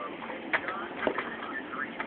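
A baby's soft, brief babbling sounds, faint, with a couple of small clicks about half a second and a second in.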